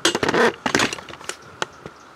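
Hand handling of small metal parts: a short burst of rattling clatter, then several sharp little clicks and taps as an endpin jack rigged with a screw and wire is picked up and turned in the fingers.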